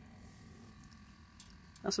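Near silence with a faint background hiss, then a man's voice begins near the end.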